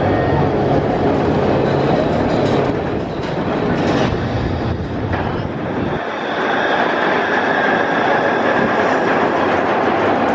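Bolliger & Mabillard wing coaster trains and lift machinery running. A steady rattling rumble changes abruptly about six seconds in to a higher, steadier mechanical whir with a faint steady tone, as a loaded train climbs the lift hill.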